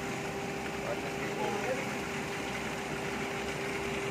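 A steady mechanical hum holding one constant tone over an even hiss, with faint voices in the background.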